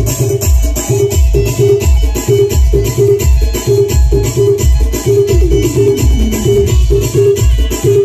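Live band of electronic keyboards and drum pads playing Adivasi folk dance music loud through a large speaker stack. A heavy bass beat pulses steadily under a fast high ticking percussion pattern, and a falling synth tone comes in about five seconds in.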